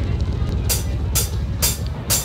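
Drummer's count-in on a live stage: three sharp clicks about half a second apart, over a low steady hum.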